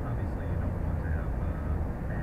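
Steady low rumble of a car's tyre and engine noise at highway speed, heard from inside the cabin. A faint voice murmurs under it.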